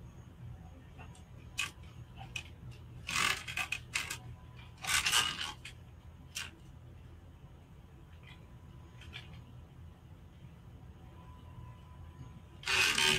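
Scattered rustles and scrapes of body and clothing movement, loudest about three and five seconds in, over a steady low hum of the International Space Station's cabin ventilation.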